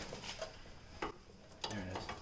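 One light click of metal on metal as hands work at a truck's brake caliper, otherwise quiet.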